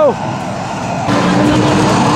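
Fast & Furious racing arcade game's sound effects: simulated car engine and race noise over the arcade's din. It turns louder about a second in, with a steady drone.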